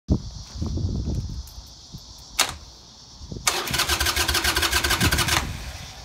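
Harley-Davidson Sportster V-twin turning over on its electric starter for about two seconds with a steady whine and rapid pulsing, then stopping without the engine firing: the bike is suspected of having no spark. A sharp click comes about a second before the cranking.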